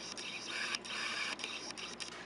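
A small motor whirring in short bursts, breaking off briefly twice and stopping shortly before the end.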